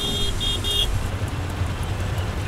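Steady street traffic noise with a few quick car horn toots in the first second.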